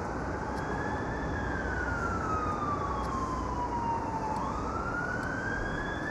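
Emergency vehicle siren in a slow wail over steady downtown traffic noise: the pitch climbs briefly, falls slowly for about three seconds, then climbs again from about four seconds in.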